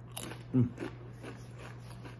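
A Doritos tortilla chip being chewed: one sharp crunch just after the start, then a few softer chewing crunches, with a short hummed "mm" about half a second in.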